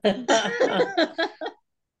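A person's laughter on a video call, a burst of about a second and a half that stops abruptly.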